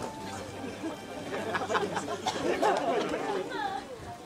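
Many voices chattering at once, overlapping, with no single voice standing out; a higher voice rises above the chatter near the end.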